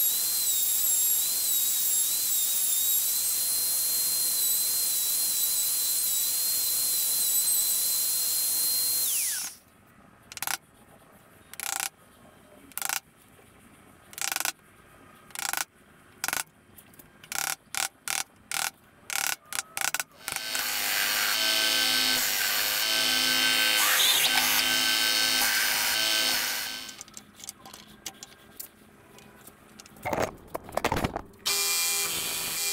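Handheld Ozito plunge router running steadily with a high whine for about nine seconds as it cuts a recess into a hardwood slab, then stopping. Sharp, irregular knocks follow: a wooden mallet striking a chisel to clean out the recess. Near the end comes another stretch of steady machine noise lasting about six seconds.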